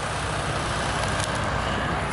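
An engine running steadily at idle, under a constant outdoor hiss.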